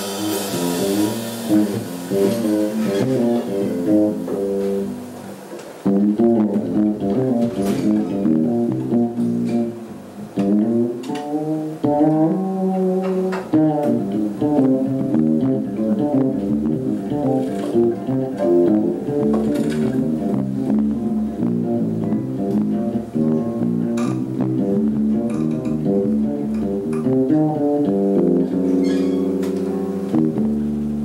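Oud playing a quick, winding solo melody over a double bass line. A cymbal wash dies away in the first few seconds.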